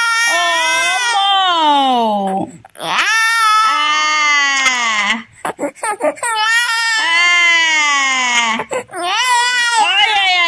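Infant crying in four long wails. Each wail starts high and slides down in pitch, with short breaks for breath between them.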